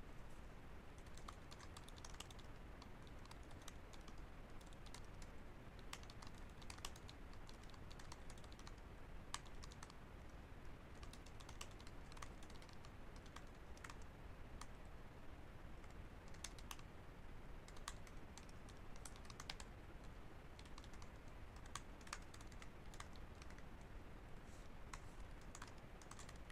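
Faint typing on a computer keyboard: scattered, irregular keystrokes.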